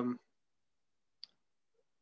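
A man's voice trails off, then near silence, broken once by a single faint click a little over a second in.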